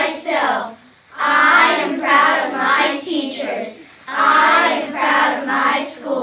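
A group of children reciting a school pledge together in unison, in phrases broken by two short pauses.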